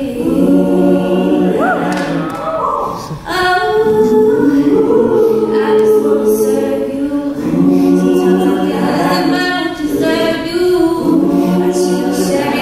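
Mixed-voice a cappella group singing sustained harmony chords, with a lead voice at the front adding a short gliding run early on; the chord breaks off briefly about three seconds in and resumes.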